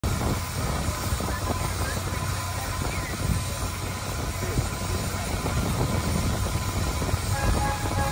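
Shay geared steam locomotive standing at rest, giving a steady low rumble and hiss, with people talking faintly.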